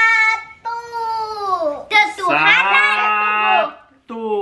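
Long, drawn-out vocal sounds from a child: one held, slowly falling note about a second long, then a held note of about a second and a half in which a lower voice joins, cut off just before the end.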